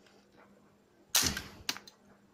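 A homemade LEGO brick-shooting gun firing: one sharp, loud crack a little past halfway that dies away over about half a second, then two light clicks near the end.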